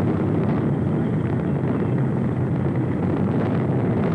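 Saturn V rocket's five F-1 first-stage engines firing at liftoff: a loud, steady, deep rumble.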